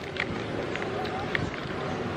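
Background chatter of people in a busy outdoor spot, with three light crinkles of a plastic snack bag as a chip is pulled out.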